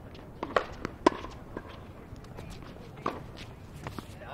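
A few short, sharp knocks of a tennis ball bounced on a hard court between points, about every half second around the first second and once more near the end.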